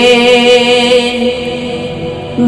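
Bangla Islamic gojol singing: one long, steady held vocal note between sung lines, easing off a little near the end.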